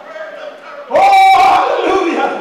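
A man's amplified voice through a microphone and PA, giving a loud, held, chant-like shout that starts about a second in, after a quieter first second.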